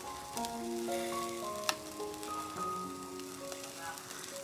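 Chicken pieces sizzling over a charcoal grill, a steady hiss, under background music of slow sustained notes. A single sharp click comes about a second and a half in.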